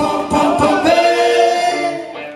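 Live band with horns and singers playing the last notes of a song: a few final hits, then a held closing chord.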